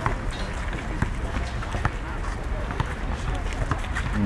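Outdoor ambience: a steady background hiss with scattered light taps and clicks.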